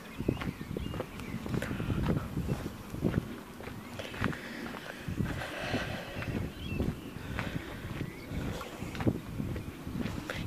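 Footsteps on a gravel towpath, an uneven run of low thumps and crunches at walking pace.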